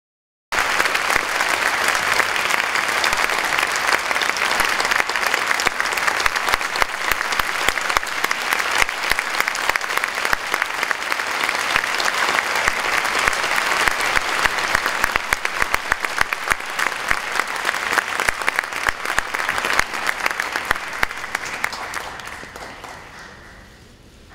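Audience applauding, a dense steady patter of many hands clapping. It begins abruptly about half a second in and dies away near the end.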